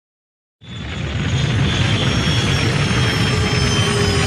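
Silence, then about half a second in a loud, deep rumble starts abruptly and holds steady, with faint steady high tones above it: a sci-fi spacecraft engine sound effect.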